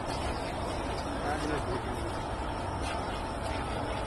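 Steady low outdoor noise with faint, distant voices.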